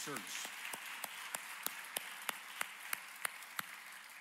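Congregation applauding in praise, with one pair of hands clapping steadily about three times a second above the crowd's applause, which fades near the end.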